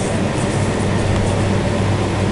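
A loud, steady low rumble with a hum underneath.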